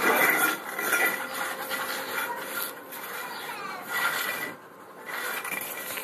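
A loose floor tile being scraped along concrete paving and dirt by a German shepherd dog pushing it with its paws and muzzle: a rough, rasping scrape in uneven strokes, loudest at the start.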